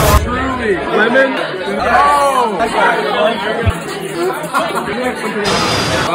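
Several people talking over each other in a room: party chatter and conversation with no single clear voice.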